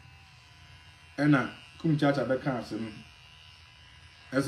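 Electric hair clipper buzzing steadily at a low level, with a voice speaking briefly over it in the middle.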